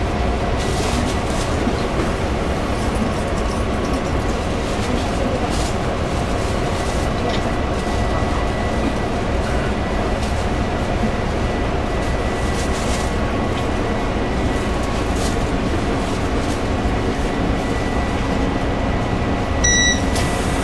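Steady rumble and hum inside the passenger car of a Taiwan Railway EMU500 electric multiple unit, with faint steady whines. A short electronic beep sounds near the end.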